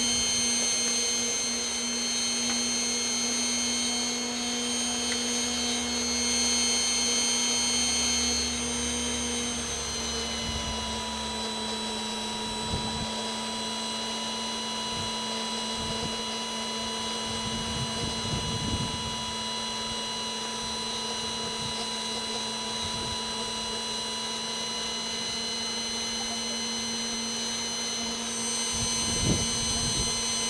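Hot-air blower of a homemade fluid-bed coffee roaster running steadily during a roast, a motor whine made of several steady tones. Its tone shifts about ten seconds in.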